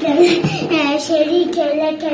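A young girl chanting in a sing-song voice, the same short syllables over and over.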